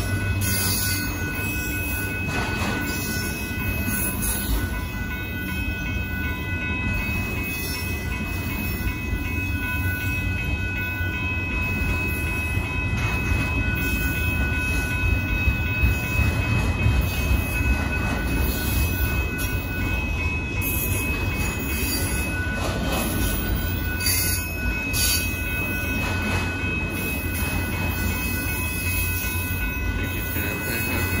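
Freight train of autorack cars rolling steadily past a grade crossing: a continuous low rumble of wheels on rail, with thin high-pitched tones held over it throughout.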